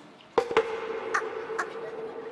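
Cartoon sound effect: two sharp strikes close together, then one steady ringing tone that carries on, with two lighter ticks later.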